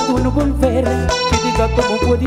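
Live bachata band playing: guitar lines over a pulsing bass beat, with a male lead singer's voice.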